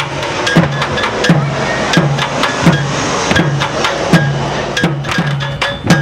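A deep drum beaten in a steady rhythm, about one and a half strokes a second, with rattan sticks clacking together in sharp, quick runs between the strokes, busiest in the middle.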